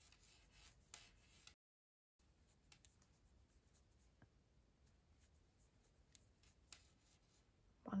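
Near silence with faint rubbing and a few light ticks of a crochet hook drawing yarn through stitches. The sound drops to dead silence for about half a second shortly after the start.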